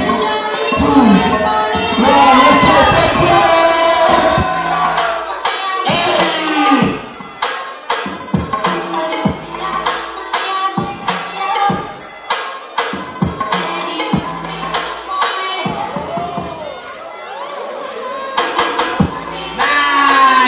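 Dance-battle music with a steady drum beat playing over a sound system, with a crowd cheering and shouting loudly over it for the first several seconds. Then the beat carries on under a quieter crowd, and the sound swells again near the end.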